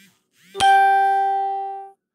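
A single chime-like musical note, struck sharply about half a second in just after a quick rising swish. It rings and slowly fades for over a second, then cuts off suddenly near the end, like an added sound effect.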